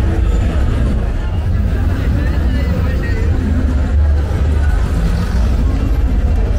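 Busy street crowd: many people talking at once over a steady deep rumble of traffic.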